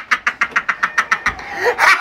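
A man laughing hard in rapid repeated 'ha' pulses, about seven a second, that break off briefly past the middle and come back louder near the end.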